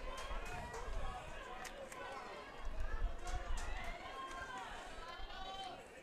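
Faint, indistinct voices and chatter of spectators in a ballpark crowd, with a few light clicks early on.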